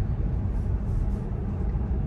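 Steady road and tyre noise inside the cabin of a Tesla electric car cruising at about 50 mph, mostly a low rumble.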